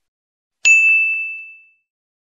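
A single bright bell-like ding from a notification sound effect, struck about two-thirds of a second in and ringing out over about a second as the subscribe button turns to 'subscribed'.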